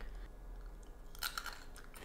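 Faint chewing of a small piece of raw fennel, with a few short crunches a little past the middle.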